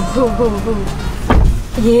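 Laughter in a run of short bursts falling in pitch, then a single dull thump about halfway through, with a voice starting near the end.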